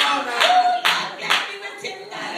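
Hand clapping: a few sharp, uneven claps under a second apart, with a voice calling out in a held tone about half a second in.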